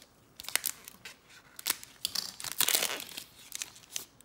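Trading card pack wrapper being torn open and crinkled by hand: a quick run of sharp rustles and tearing that starts about half a second in and is loudest near the three-second mark.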